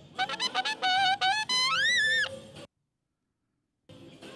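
A recorded saxophone track played back through a mixing console: a quick run of short notes, then a long high note that bends up and falls away. Its tone is shrill around 3 kHz. The playback then cuts to dead silence for about a second.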